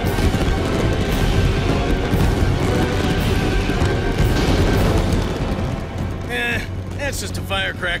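Cartoon fireworks bursting and crackling under music, with a low rumble. About six seconds in the bursts give way to voices.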